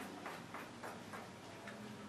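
Faint, quick taps on a board in a fairly even rhythm of about three or four a second, as a row of evenly spaced tick marks is drawn along a line to show uniform sampling.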